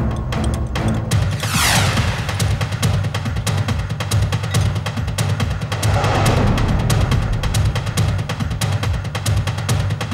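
Dramatic background score with fast, pounding drums, and two sweeping swells, one a second or two in and one around six seconds.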